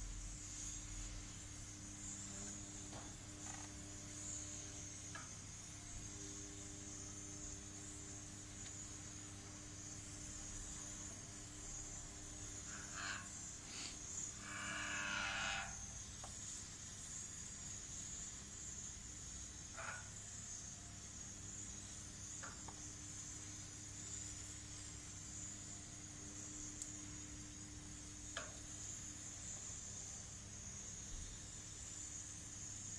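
Gas grill running with its rotisserie spit turning: a low steady hum under a steady high hiss. A few light metal clinks and one brief scrape near the middle come from a spoon working batter in a metal pan under the spit.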